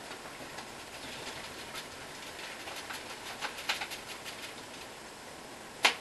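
Paintbrush stroking paint onto a canvas: faint, dry, scratchy strokes that come in irregular flurries, with a sharp knock just before the end.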